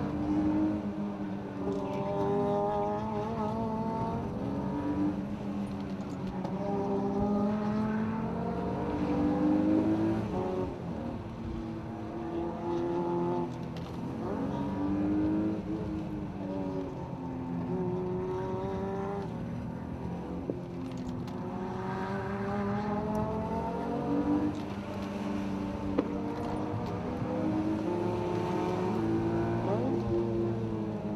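E36 BMW M3's inline-six engine heard from inside the cabin, revving up and easing off again and again through the bends: its pitch climbs in repeated glides, each a few seconds long, and drops back between them. A single sharp click comes near the end.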